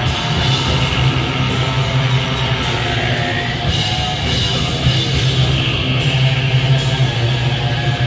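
Heavy metal band playing live: electric guitars, bass guitar and drum kit, loud and unbroken.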